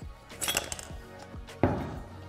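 Aluminium engine cylinder of a SIP BFA 306 Vespa engine being pulled off the crankcase studs, with a brief metallic clink and scrape about half a second in, then set down on a wooden workbench with a dull knock near the end.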